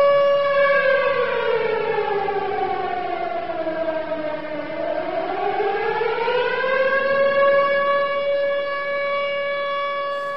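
Civil-defence sirens wailing. One holds a steady tone while a second slides down in pitch to about half, through the middle, and climbs back up to join it.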